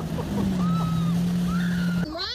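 Motorboat engine running steadily at towing speed with a constant low hum, over the rushing noise of the wake.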